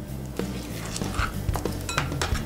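Soft background music with a few short knocks and scrapes from a metal fork scooping soft avocado flesh out of its skin and into a glass bowl.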